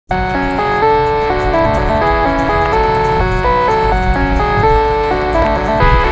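Background music: an instrumental stretch of a song, a quick melody of short held notes stepping up and down over a low bass beat.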